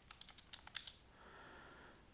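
Computer keyboard typing: a quick run of faint key clicks in the first second as a number is entered into a spreadsheet and Enter is pressed. A faint soft hiss follows in the second half.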